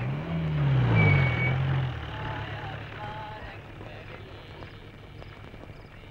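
A vehicle engine, likely a jeep pulling up. Its low engine note falls and rises, loudest about a second in, then dies away, leaving a faint low background.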